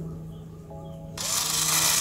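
Small RYU cordless drill running with a thin bit boring through a ribbed rubber car floor mat. A steady motor hum, joined about a second in by a hiss of cutting that grows louder.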